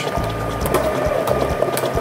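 Lottery drawing machine running: many plastic balls clattering and rattling against each other as they are tumbled in its clear drum, over a steady hum.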